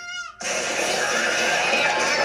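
Anime sound effects: a short falling tone, then about half a second in a sudden loud crashing, rushing noise that keeps going as a character tumbles down a wall in a cloud of dust, with a faint wavering cry inside it.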